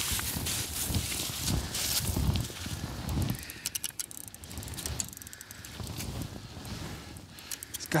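Handling noise from an angler kneeling in snow at an ice hole while landing a fish: rustling and crunching for the first few seconds, then quieter, with short runs of quick sharp ticks.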